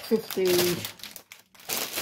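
Clear plastic wrapping crinkling as a wrapped magazine pack is handled, pausing briefly just past the middle before resuming.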